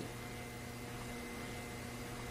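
Steady low hum with faint hiss: room tone, with a few faint steady tones.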